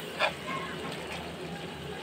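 Chicken, potato and egg curry sizzling in an aluminium kadai: a steady hiss, with one short scrape of a steel spatula against the pan just after the start.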